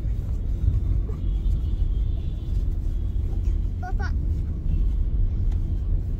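Steady low rumble of road and engine noise heard inside a car's cabin.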